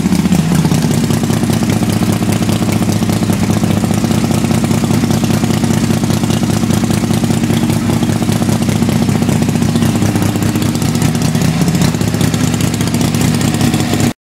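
The V-twin engine of a 1966 Harley-Davidson Panshovel 1200 running steadily, with a fast, even firing beat.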